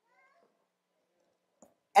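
Mostly a quiet room, with one brief, faint, high-pitched cry-like sound at the very start and a soft click near the end.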